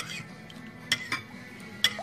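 Metal spoon clinking against the side of a glass bowl while stirring thick raspberry sauce, with four sharp clinks.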